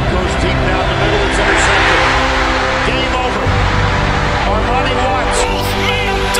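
Music with steady held chords layered over stadium crowd noise and indistinct voices from game footage. The crowd noise swells in the first two seconds, then eases.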